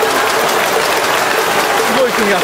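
Ballpark crowd applauding: a steady, dense wash of clapping from the stands.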